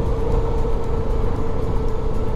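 Motorcycle engine running at a steady cruise, with wind rumbling on the microphone and a steady hum.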